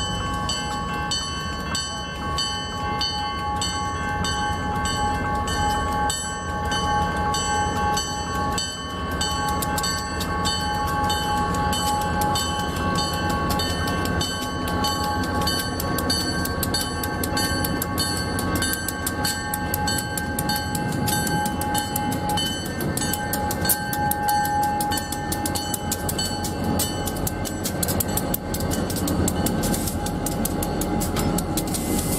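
Grade-crossing warning bell ringing steadily with evenly repeating strikes, while diesel locomotives, a GP40 leading, rumble closer and pass the crossing with the engine sound building from about a third of the way in.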